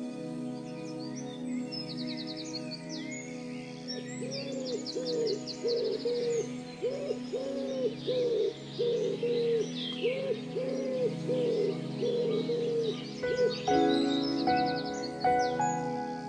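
Birdsong over sustained keyboard chords. From about four seconds in, a run of low cooing calls comes about one and a half times a second, with quick high twittering bird calls above. Fresh keyboard notes enter near the end.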